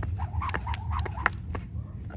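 Skipping rope slapping the concrete, sharp ticks about four a second that stop near the end.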